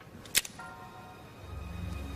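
Soft, sustained dramatic underscore fading in and slowly swelling, with a single sharp click about a third of a second in.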